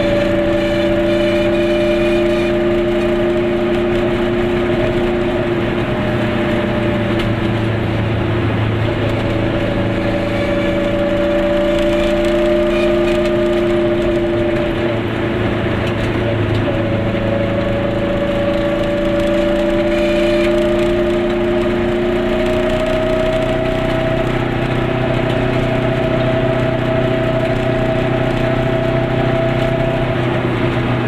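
Goggomobil's air-cooled two-stroke twin engine pulling the car along at a steady pace, heard from inside the small cabin with road noise. Its pitch dips briefly about halfway through, then rises slowly.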